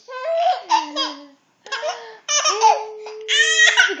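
Baby laughing in several short bouts, ending with a long held high note in the second half.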